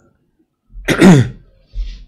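A man clearing his throat once, loudly, about a second in, the voiced part falling in pitch, followed by a shorter, quieter throat or breath noise near the end.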